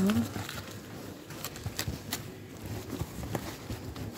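A cardboard parcel box wrapped in plastic film being pulled out of a parcel-locker cell: scattered knocks, scrapes and crinkles as it is handled.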